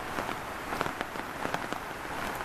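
Rain falling: a steady hiss with many irregular drops ticking sharply on nearby surfaces.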